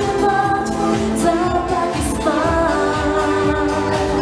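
A woman singing a pop song live into a microphone, backed by a band with keyboard and a steady beat.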